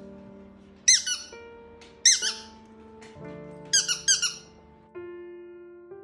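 Squeaker in a soft penguin-shaped egg dog toy squeezed in quick pairs, about three times, each squeak short, loud and dropping in pitch, over soft electric piano music.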